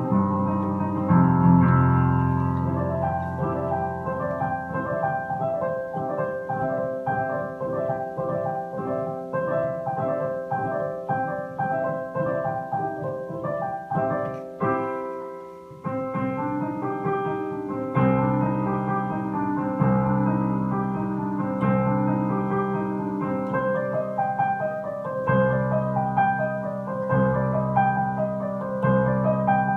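A digital piano played solo: a melody over low sustained bass chords. About halfway through the playing thins and fades to a brief lull, then heavy bass chords come back, struck about every two seconds under the melody.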